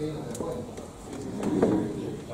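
Indistinct, muffled speech in a room, with no words clear enough to make out.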